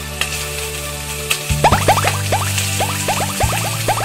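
Animated intro jingle: sustained low synth notes, over a steady hiss. From about one and a half seconds in, a quick run of about a dozen short rising 'bloop' sound effects.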